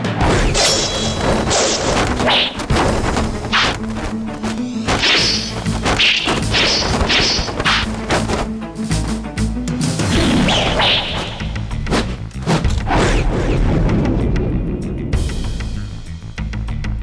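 Dramatic background music under a rapid run of film fight sound effects: many hard hits and crashes, with short swishes in between.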